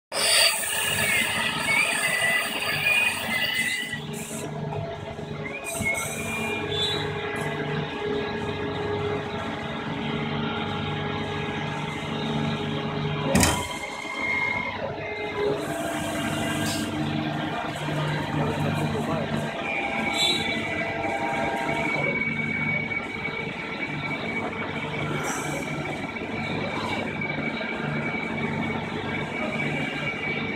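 AWEA LP4021 bridge-type CNC vertical machining center running: a steady mechanical hum with several high whining tones. There is a wavering squeal in the first few seconds and a single sharp knock about thirteen seconds in.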